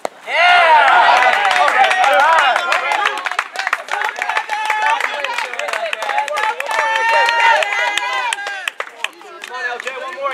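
A crack of a bat meeting a softball right at the start, then a sudden burst of loud cheering and shouting from many teammates, with clapping, that eases off near the end.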